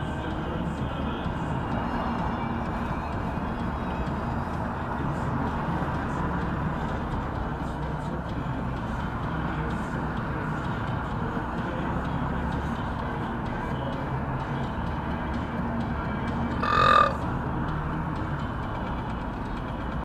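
Steady road and engine noise inside a car driving at about 50 km/h, as picked up by a dashcam. About 17 seconds in, a brief pitched sound, under a second long, is the loudest thing heard.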